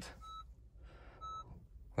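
Two short electronic beeps about a second apart from the car's chime, in an otherwise quiet cabin. The 1.5-litre Honda hybrid is switched on and running on its battery alone, with the petrol engine stopped and silent.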